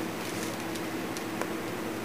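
Steady hiss of a window fan running, with faint light ticks and brushing as a thin sheet of wood veneer is handled and laid onto a glued panel.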